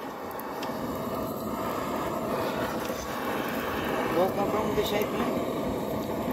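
Butane torch on a gas canister burning with a steady rushing hiss, its flame held against charcoal to light it. A faint voice speaks briefly about two-thirds of the way through.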